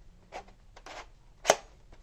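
Plastic toy foam-dart blaster being handled: a few light rattles, then one sharp plastic click about one and a half seconds in.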